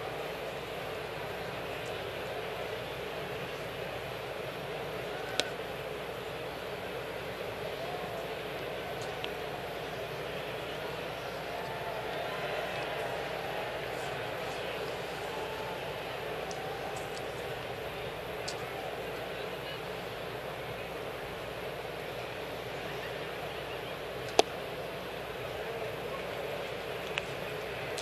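Ballpark crowd ambience: a steady murmur of many voices, broken by a few sharp knocks, the loudest a little before the end.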